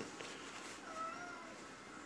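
A faint, brief wavering tone about a second in, over quiet room tone.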